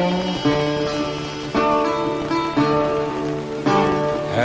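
Live acoustic blues instrumental break: a harmonica playing held notes over a steel-bodied resonator guitar, whose strummed chords land about once a second.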